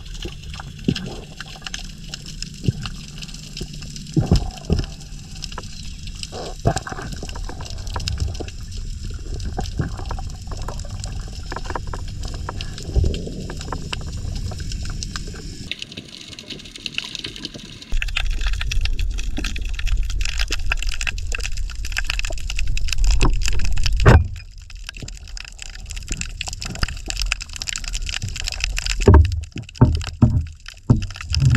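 Underwater sound heard through a camera in the sea: a steady, muffled rumble of moving water with scattered clicks and crackles, louder for a stretch past the middle.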